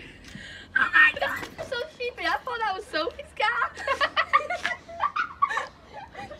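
Indistinct voices talking, words unclear.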